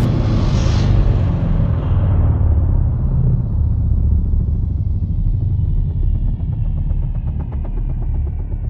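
Cinematic intro music: a deep boom's low rumble rings on, its brightness fading over the first couple of seconds. Faint falling tones and a soft rhythmic pulse come in during the second half.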